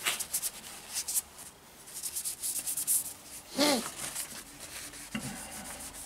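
A cloth rag rubbing wood restorer into a wooden rifle stock: a run of quick, short scratchy wiping strokes, then slower, quieter rubbing. A brief voiced sound from a person comes a little past halfway.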